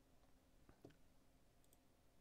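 Near silence: room tone with two faint computer-mouse clicks a little under a second in.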